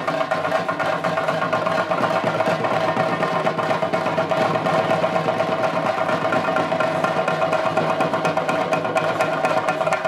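Rapid, unbroken temple drumming with sticks, the chenda percussion that accompanies Theyyam, with steady ringing tones sustained above the strokes.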